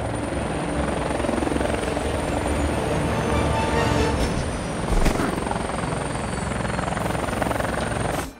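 Helicopter rotor chopping steadily, with a thin high whine from the turbine, and a single thump about five seconds in.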